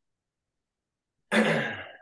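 Silence, then about a second and a half in a man clears his throat once.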